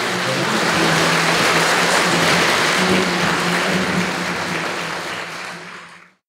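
Audience applauding, a steady patter of many hands that fades away near the end.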